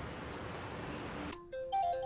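A steady background hiss, then about a second and a half in a mobile phone's alert tone starts playing a short melody of clean, stepping notes, waking a sleeper.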